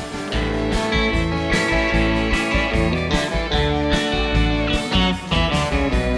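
A live band playing an instrumental passage, with electric guitar to the fore.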